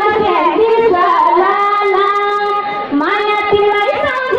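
A high voice singing a melody, holding long notes and sliding up and down between them, with a rising slide about three seconds in.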